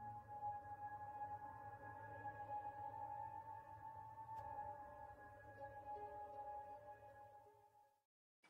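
Faint ambient horror-score drone: a few steady, held high tones over a low hum, fading out near the end.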